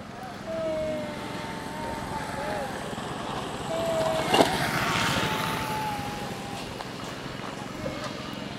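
A small vehicle engine running as it passes: it grows louder toward the middle and fades toward the end, with one sharp click midway.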